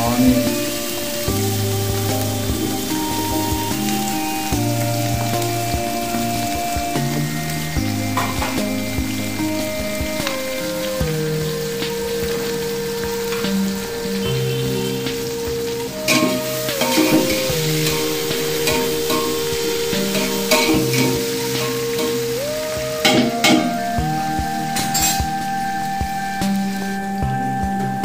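Sliced onions sizzling as they fry in hot oil in a large aluminium pot, with a few clinks of a metal slotted spoon stirring them. Soft background music with long held notes plays over it.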